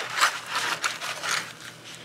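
Hands rummaging in the pocket of an X-Pac fabric pouch: a run of short scrapes and rustles of the fabric, with loose small USB gadgets knocking together.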